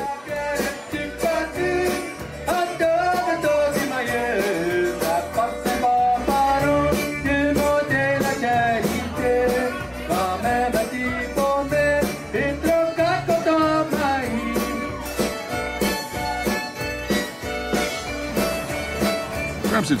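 A Cajun band playing with accordion, a steady dance beat and a voice singing.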